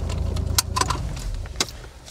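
Car engine idling, heard inside the cabin, with a low rumble that weakens after about half a second. A few sharp clicks and a jingle of keys follow.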